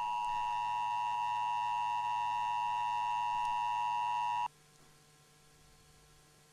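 Emergency Broadcast System attention signal: a steady electronic tone of several pitches sounding together. It cuts off suddenly about four and a half seconds in.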